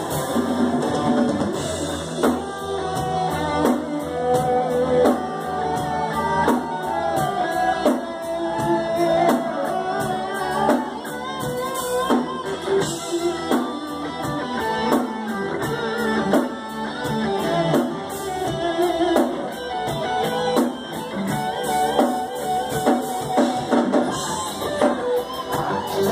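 Heavy metal band playing live, heard from the crowd: a distorted electric guitar plays a lead line over a fast, steady drum beat and bass.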